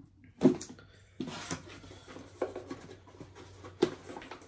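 Handling sounds on a tabletop: a knock about half a second in, then rustling and light knocks, with a sharp click near the end.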